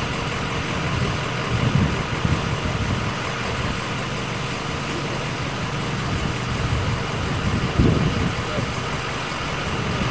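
Steady outdoor noise of a motor vehicle engine idling, with faint indistinct voices now and then.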